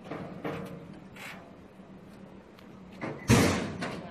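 Knocks and thuds of a motorcycle being rolled off a truck bed onto a metal loading ramp, with one loud thump about three seconds in.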